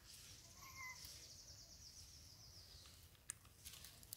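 Near silence: faint outdoor ambience with a high, rapidly pulsing trill that runs for about three seconds and then stops, a brief faint chirp about a second in, and a few light clicks near the end.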